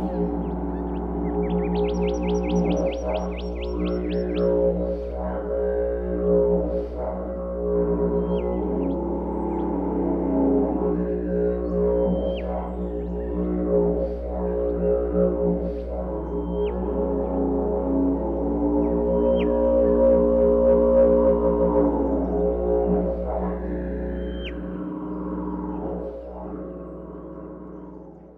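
Music built on a steady didgeridoo drone, with short high chirps over it, fading out near the end.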